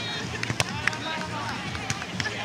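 A volleyball struck by hand on a serve: one sharp slap about half a second in, over the chatter of voices around the courts, with a couple of fainter knocks later.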